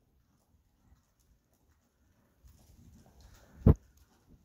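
Horse walking on the soft sand footing of an indoor arena: faint, muffled hoof thuds in the second half, then one sharp, loud thump near the end.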